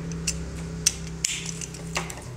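About four sharp clicks and taps of hand tools being handled on a tabletop, with scissors and a plastic utility knife picked up and set down against cardboard, over a steady low hum.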